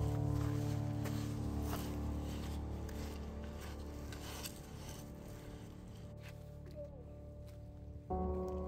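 Background music: a sustained chord held and slowly fading, with a new chord coming in right at the end.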